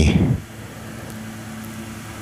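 Steady low mechanical hum with a faint held tone, after the last word of speech in the first moment.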